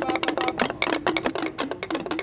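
Quitiplás, hollow bamboo stamping tubes, struck on a concrete floor by several players together in a quick interlocking rhythm. Each stroke is a short hollow knock with a brief low ring.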